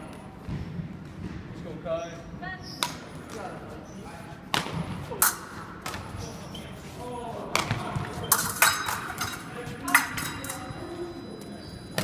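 Épée blades meeting in a fencing bout, with several sharp metallic clinks scattered through. The loudest come a little after the middle. Near the end a thin, steady high electronic tone sounds from the scoring box as a touch registers.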